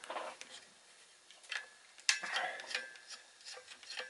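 Screwdriver working on the screws of an inverter's circuit board and aluminium heat sink: a few small metal clicks and scrapes, with one sharper metallic clink about two seconds in that rings briefly.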